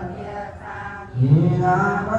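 A group of women chanting Buddhist sutras together in a steady, sung recitation, reading from their books. The chant drops quieter in the first second, then a louder held phrase begins a little past halfway.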